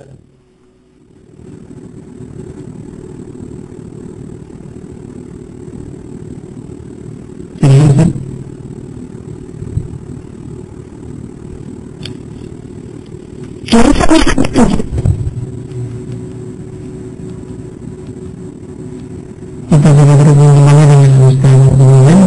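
A steady low engine-like rumble, with two short loud surges, one about a third of the way in and one past the middle. Near the end a loud, steady pitched drone begins.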